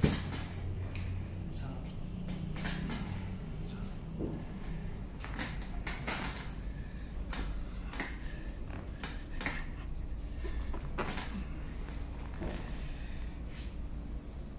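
A chiropractor's hands manipulating a patient's foot and ankle: a sharp click right at the start, then scattered smaller clicks and knocks, over a low steady hum.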